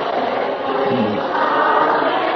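A group of voices chanting a devotional Krishna kirtan together, many voices blended in one sustained melody.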